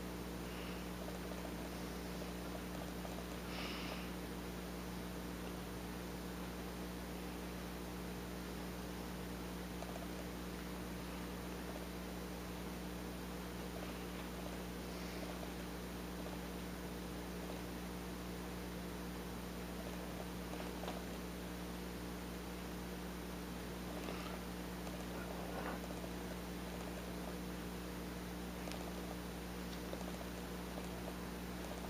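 Steady low hum with a few faint, short scrapes of a small carving knife shaving a bar of Ivory soap.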